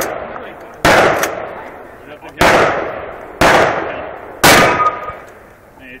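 Gunshots from a long gun: four shots spaced roughly a second apart, each with a long echo fading out behind it, and the tail of an earlier shot dying away at the start.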